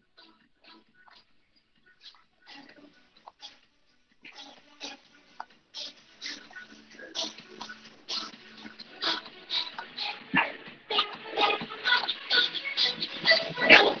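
A man breathing hard with exertion while holding a plank and raising alternate arms: short, irregular puffs and grunts, faint at first and growing louder and more frequent in the second half.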